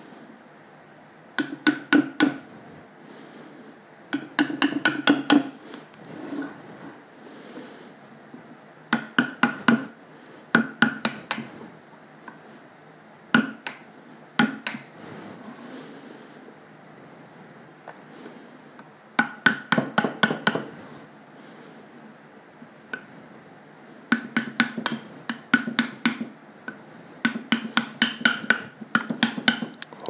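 A small hammer taps a metal tool wedged against a vacuum-formed plastic face shell, working the shell off the form it is stuck on. The taps come in short quick runs of four to six, a few seconds apart, each with a light metallic ring.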